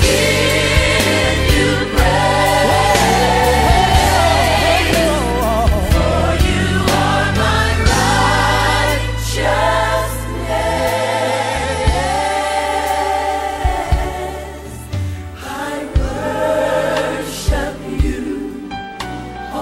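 Gospel worship song: a choir singing with instrumental backing.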